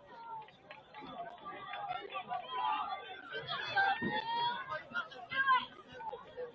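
Indistinct chatter and calling from several voices of players, sideline and spectators at a soccer match, with a couple of louder calls in the second half.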